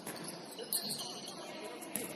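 Basketball shoes squeaking on a hardwood gym floor as players run, over faint voices in the hall, with a ball bounce right at the end.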